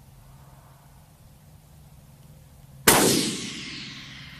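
A 6mm Creedmoor bolt-action rifle fires a single shot near the end, a sudden loud report whose echo rolls away over about a second.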